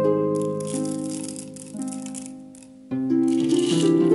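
Whole coffee beans rattling into the stainless steel hopper of a Porlex Mini hand grinder, dropped in a few separate pours with short gaps between them. Gentle harp music plays under it.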